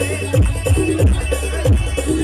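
Wedding dance music from a band: an electronic keyboard melody over a steady bass line, with deep drum hits that drop in pitch, about three every two seconds.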